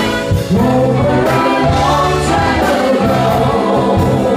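Live band playing a blues-rock song with three women singing together into microphones.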